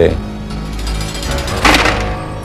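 Low sustained musical drone, with a brief harsh rattling clatter about three-quarters of the way through.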